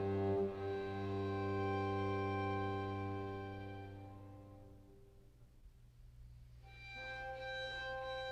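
String quartet holding long bowed chords that fade almost to nothing about five seconds in, then a new chord swells in near the end.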